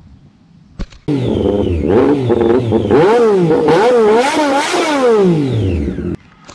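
Motorcycle engines revving up and down repeatedly, several pitches rising and falling together, ending in one long falling note. This is a loud sound effect laid under the channel's logo card, starting suddenly about a second in.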